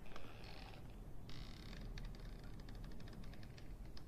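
Faint creaks: two short scraping bursts, then a quick run of light clicks, over a low steady hum.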